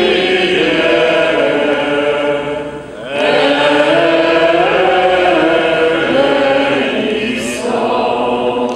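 A small group of people singing a religious hymn together in two long phrases, with a short pause for breath about three seconds in.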